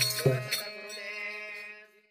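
The last strokes of devotional bhajan music, drum and cymbals, stop about half a second in, leaving a held harmonium note that fades away and ends just before the close.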